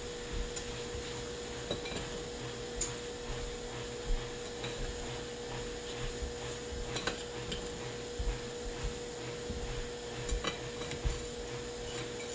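Hands rubbing seasoning into a raw pork loin on a plate, with scattered light taps and clinks of the plates over a steady faint hum.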